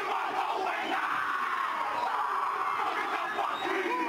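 Rugby league players' haka, shouted chant and battle cries, over a loud stadium crowd, steady throughout. The broadcast audio is poor quality.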